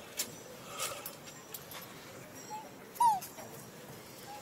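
Macaque giving a short, high squeak that falls in pitch about three seconds in, after a fainter one just before it; a few light clicks come earlier.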